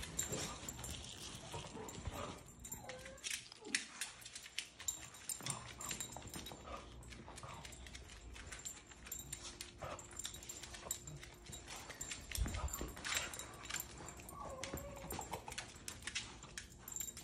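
A dog searching over a hard laminate floor: its claws click and tap irregularly as it moves about, with sniffing.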